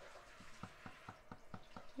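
A run of faint small clicks or ticks, about five a second.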